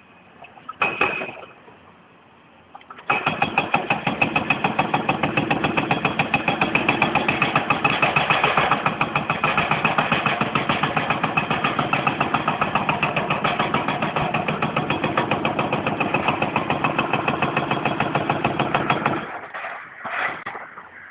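Excavator-mounted hydraulic breaker hammering at the base of a chimney: a rapid, even run of blows that starts about three seconds in and stops shortly before the end.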